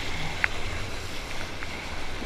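Steady wind buffeting the camera microphone, with water washing around a surfboard at water level. There are a couple of light clicks, one about half a second in and one later.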